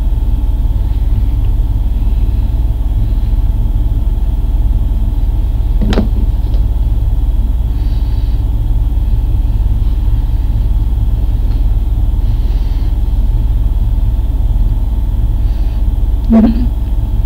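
Loud, steady low rumble with faint constant hum tones underneath, and a single sharp click about six seconds in.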